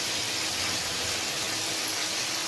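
Breadcrumb-coated chicken strips frying in hot oil in a pan, giving a steady sizzle.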